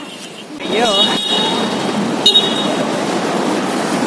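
Steady city street traffic noise from passing vehicles. About a second in there is a short wavering voice, and just past two seconds a brief high-pitched beep.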